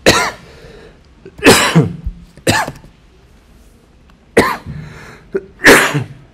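A man coughing repeatedly, about five loud coughs at uneven intervals.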